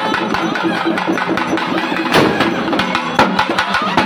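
Double-headed barrel drums beaten in a fast, dense rhythm of strokes, with a held pitched tone over the drumming in the first two seconds.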